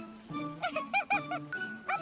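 A cartoon ferret giving a quick run of four or five short, squeaky yips over light background music.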